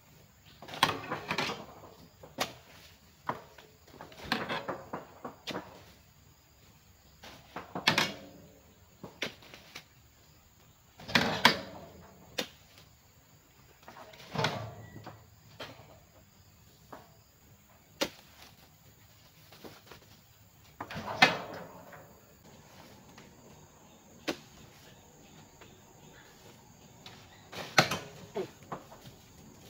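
Heavy oil palm fruit bunches being hoisted on a hooked pole and dropped into a wooden-sided truck bed, each landing with a knock or thud, some with a short rustle of the spiky bunch, about every two to four seconds. A faint steady high insect drone runs underneath.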